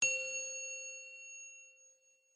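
A single bright chime struck once, the sound of an animated logo sting, ringing with several clear tones and fading away over about two seconds.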